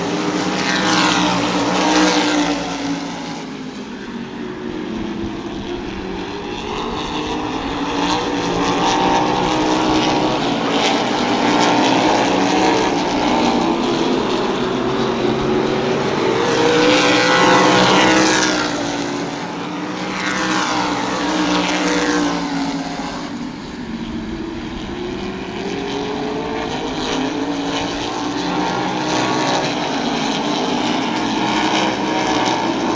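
Open-wheel modified race cars' engines running hard around a short oval. The sound swells as the cars pass close, clearly around a second or two in and again near the middle, and eases as they go down the far side, the pitch bending as each one goes by.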